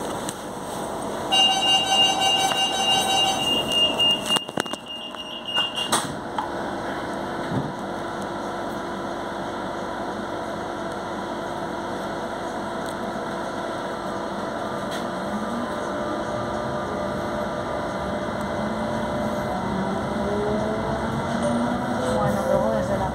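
Electric commuter train: a door-warning tone sounds about a second in, followed by a few knocks as the doors shut. From the middle on, the traction motors whine, rising steadily in pitch as the train pulls away and gathers speed, over a steady rumble.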